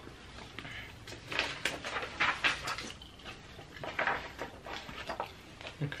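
Sheets of paper rustling as they are handled and moved, in short irregular bursts.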